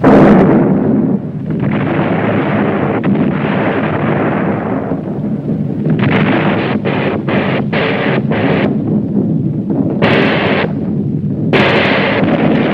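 Battle sounds of explosions and gunfire: a loud blast at the start followed by a long rumble, then a quick run of short bursts of gunfire around the middle, and two more loud blasts near the end.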